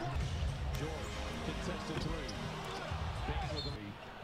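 An NBA basketball game broadcast playing quietly: steady arena crowd noise with faint commentator voices.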